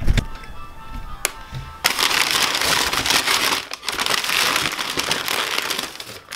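Crumpled kraft packing paper being handled and pulled out of a cardboard shipping box: a dense crackling rustle that starts about two seconds in and carries on, after a few faint steady tones at the start.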